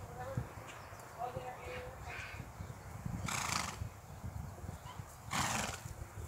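Horse trotting on a lunge line in a circle on grass, snorting out twice, about two seconds apart, over soft hoofbeats.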